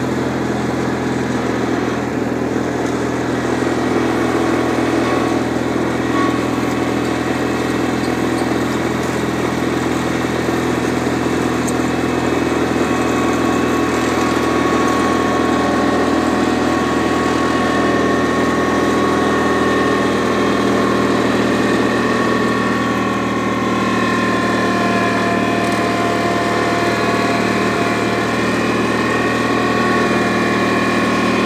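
Small engine running steadily at a constant speed, with a faint higher whine joining about twelve seconds in.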